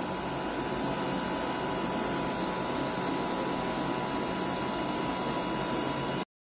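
Steady indoor machine hum and hiss with a faint, constant high whine, unchanging throughout.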